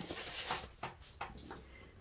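Faint handling noise: a brief soft rustle, then three light clicks about a third of a second apart.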